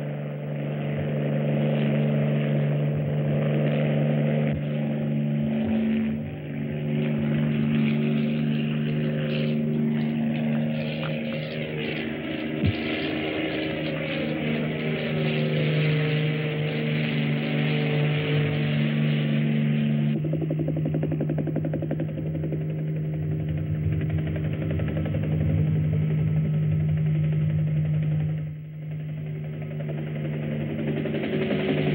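Helicopter engine and rotor running steadily in flight, with a sweeping change in tone near the middle, an abrupt change in the sound about two-thirds of the way through, and a brief dip near the end.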